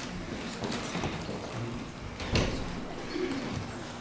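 Children shuffling and settling in a large room, with soft low vocal sounds and a single bump about halfway through.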